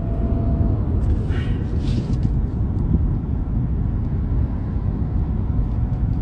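Steady low rumble of a car's engine and road noise heard inside the cabin, with a brief faint hiss about one and a half seconds in.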